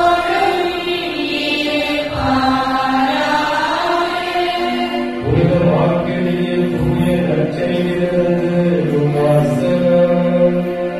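Slow sung liturgical chant in a Catholic Mass: a melody of long held notes with slow rises and falls in pitch, and a new, lower phrase starting about halfway through.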